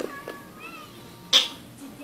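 A cat's faint, thin mew, with a click at the start and a short scratchy burst just over a second in.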